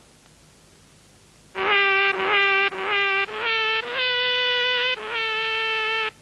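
A short tune of about eight buzzy, sustained fart notes in C-sharp minor, starting about a second and a half in. The first notes are lower, then the tune steps up and holds higher notes to the end.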